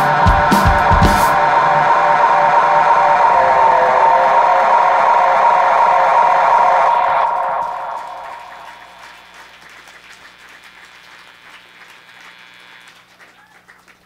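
Indie rock band ending a song live: a few drum hits, then the electric guitars' last chord held and ringing. It fades out about seven to eight seconds in, leaving only a faint ringing tail.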